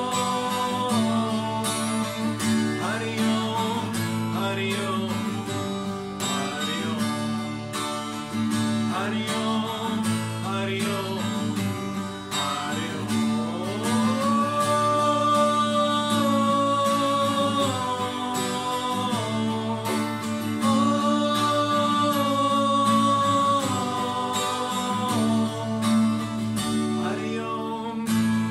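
A man singing with long held, sliding notes over a strummed twelve-string acoustic guitar.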